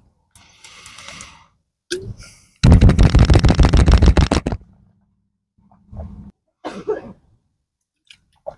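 A man's loud rasping throat sound, a rapid run of pulses lasting about two seconds from a little over two and a half seconds in, with softer breathy throat noises before and after it.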